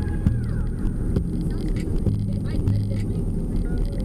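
Steady low rumble of road and engine noise inside a moving van's cabin, with faint voices over it.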